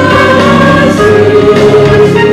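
Mixed church choir of men's and women's voices singing a Mandarin hymn, holding long notes on the closing words '得安息' ('find rest').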